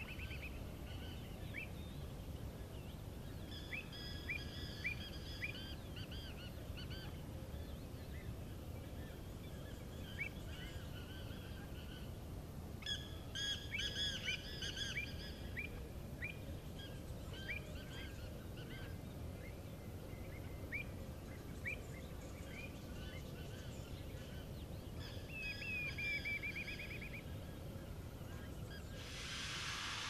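Birds calling outdoors: short chirps scattered throughout, with louder clusters of calls about four seconds in, around the middle, and again near the end, over a steady low background rumble.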